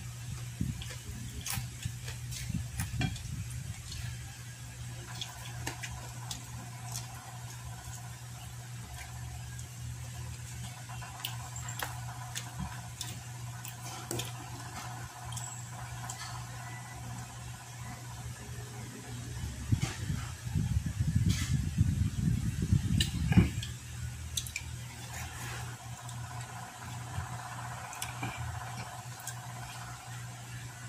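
Close-up eating sounds: chewing crispy deep-fried pork belly (lechon kawali), with many small clicks and mouth smacks, over a steady electric fan hum. Drinking from a plastic bottle comes partway through, and a louder stretch of chewing and swallowing follows about twenty seconds in.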